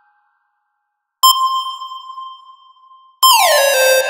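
Single notes from a bright synth lead patch in the Harmor software synthesizer, auditioned in FL Studio: after about a second of silence one note rings out and fades, and near the end a louder note slides down about an octave and holds.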